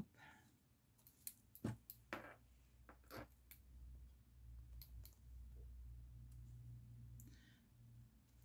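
Faint handling sounds: a few soft clicks as a paper card and small plastic clips are handled, with a faint low hum in the second half.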